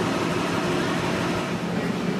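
Diesel locomotive idling on a station track: a steady, loud rumble with a hiss over it.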